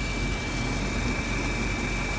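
Jeep CJ5 engine idling steadily at about 700 RPM, a thin steady high tone riding over the rumble. The idle pulls 21 inches of vacuum, a sign of an engine in good health.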